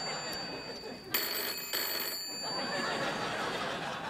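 Old-style telephone bell ringing: one ring dies away just at the start, and a second ring of about a second comes about a second in, over studio audience laughter.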